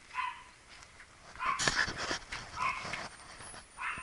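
A dog barking repeatedly, about four short barks evenly spaced a little over a second apart, with a few sharp knocks in the middle.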